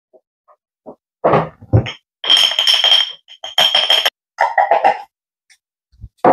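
Spice jars and their lids being handled during refilling with smoked paprika: a few light knocks, then two scraping squeaks with a high ringing tone, then a run of quick taps.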